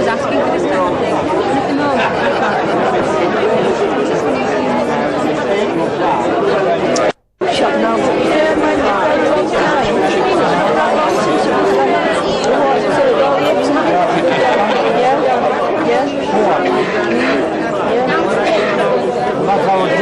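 A steady hubbub of many overlapping conversations among diners seated at tables, with the sound cutting out completely for a moment about seven seconds in.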